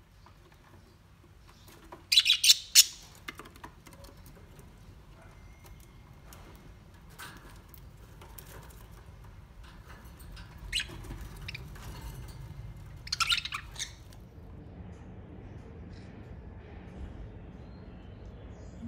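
Budgerigars chirping in short, sharp high-pitched bursts: a loud cluster of rapid chirps about two seconds in, scattered fainter chirps after it, and another cluster about two-thirds of the way through.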